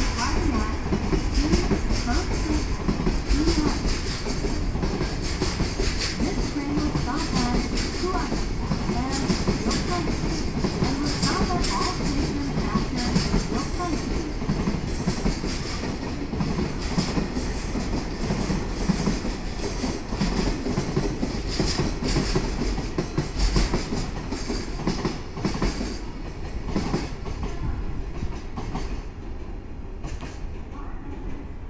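Freight train's container wagons rolling past at close range, steel wheels clicking steadily over the rail joints. The noise slowly fades near the end as the tail of the train draws away.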